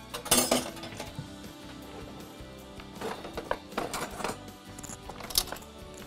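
Knife strokes on a cutting board as boiled potatoes are chopped, with light clinks of utensils against a glass bowl, a few separate knocks near the start and a run of them in the second half. Background music plays underneath.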